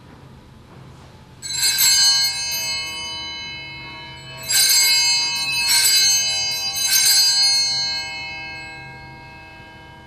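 Altar bells rung at the elevation of the chalice during the consecration at Mass: one ring about a second and a half in, then three more rings about a second apart, with the sound dying away near the end.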